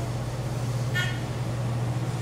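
ThyssenKrupp Synergy traction elevator car travelling upward between floors: a steady low hum inside the car, with one short high tone about a second in.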